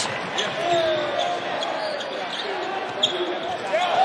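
Arena crowd noise with voices, and a basketball being dribbled on the hardwood court, its bounces heard as sharp knocks now and then.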